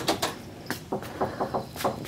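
Footsteps on a concrete path: a few light clicks and knocks, irregularly spaced, with faint voices in the background.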